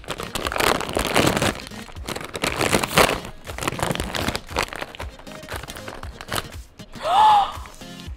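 A plastic snack-food bag crinkling and tearing as it is pulled open by hand, densest in the first few seconds and sparser after, over light background music.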